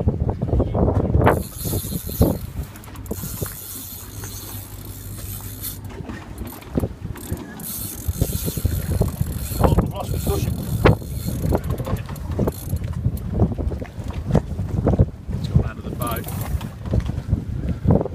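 A fishing reel being wound in spells, with a mechanical whirring and clicking, as the rod is pumped against a large hooked fish. Knocks from the rod and gear come throughout.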